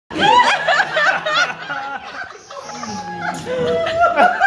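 People laughing: a quick run of high-pitched laughter in the first second and a half, settling into quieter laughs and chuckles.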